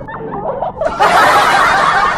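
Swimmers laughing and chattering in the water; about a second in, a loud rushing splash of water close to the microphone sets in over the voices.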